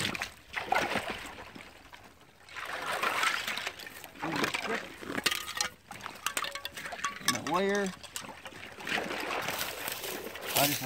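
Wading and splashing in shallow marsh water in rubber-booted waders, with water sloshing and dripping as a trap is hauled up out of a beaver run on a long stick. A brief voice sound comes about three quarters through.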